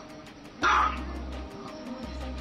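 A small white fluffy dog barks once, a single short bark a little over half a second in. Background music with a steady bass line and beat plays underneath.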